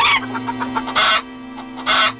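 Hen squawking: three short, loud squawks about a second apart, over held low notes of the cartoon's music.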